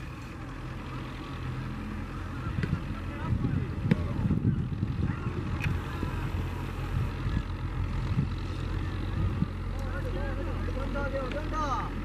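A tractor engine running steadily, a low hum, with wind buffeting the microphone.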